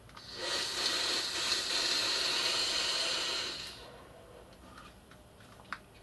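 A long drag on a single-coil rebuildable dripping atomizer, drawing air through it with both air holes open: a steady, rather noisy airy hiss for about three and a half seconds that then fades away. A small click follows near the end.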